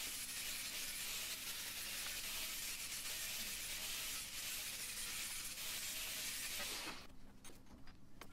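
Angle grinder with a flap disc grinding a welded metal sculpture piece: a steady hiss of abrasive on metal. It stops about seven seconds in.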